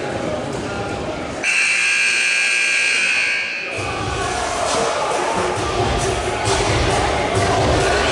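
Gym scoreboard buzzer sounding one steady blare for about two seconds, starting a second and a half in, signalling the end of a timeout. Crowd chatter fills the hall before and after it.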